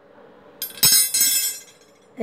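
Steel wrenches clinking against each other and the tiled floor as they are handled. A few sharp metallic clinks with a bright ringing start about half a second in and fade out before the end.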